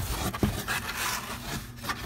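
Close, scratchy rubbing and scraping of cardboard against the microphone, with a few light knocks as the sheets are handled.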